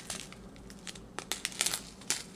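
Small plastic packets of diamond-painting resin drills crinkling as they are handled: quiet at first, then a few sharp crackles in the second half.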